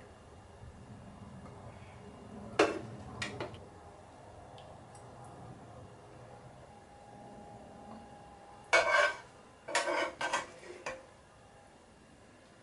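Metal spoon clinking and scraping against crockery while gravy is spooned over a stew. There are a few short clinks in the first few seconds, then a louder run of clinks near the end.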